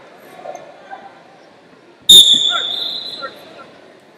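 A referee's whistle blown once about two seconds in: a sharp, high, steady tone that lasts over a second and fades, stopping the wrestling. Faint arena hubbub around it.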